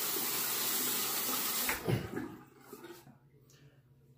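Sink faucet running while a safety razor is wetted under it, shut off a little under two seconds in. After that it is nearly quiet.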